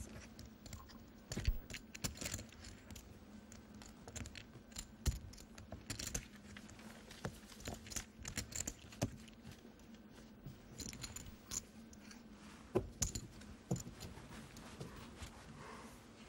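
Poker chips clicking and clacking together in irregular little clusters as they are handled at the table, over a faint steady hum.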